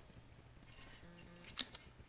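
A few faint, sharp clicks about one and a half seconds in, from a ceramic piggy bank being handled.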